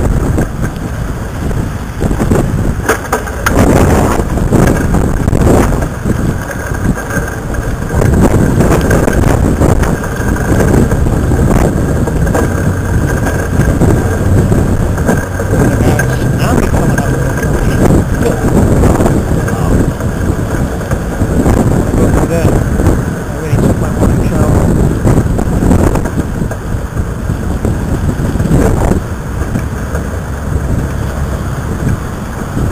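Strong gusty wind buffeting the microphone: a loud, uneven low rumble that swells and dips with the gusts. Road traffic runs behind it.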